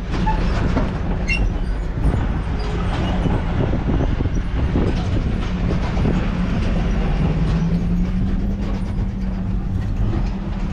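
Pickup truck driving slowly over rough, rutted landfill dirt, heard from inside the cab: a steady engine drone with frequent rattles and knocks from the body and cab over the bumps. The engine pitch rises slightly about seven seconds in.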